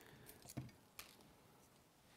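Near silence: room tone with two faint short clicks, about half a second and a second in.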